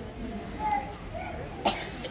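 Low murmur of children's and audience voices in a hall, with one sharp cough near the end.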